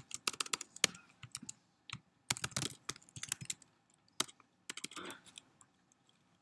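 Typing on a computer keyboard: quick runs of key clicks in irregular bursts with short pauses between them.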